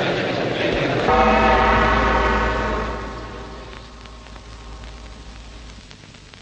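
A large gong struck once about a second in, over the noise of voices. Its ring fades away over the next few seconds.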